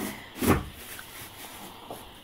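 One short handling noise, a brief rustle or knock, about half a second in.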